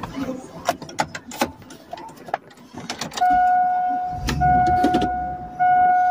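Clicks and knocks of a phone being handled, then, about three seconds in, a steady electronic beep tone that breaks off briefly twice, over a low rumble.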